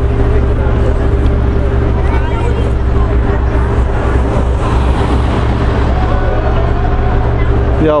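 City street traffic: a steady low rumble with a constant hum, and faint voices of people in the street.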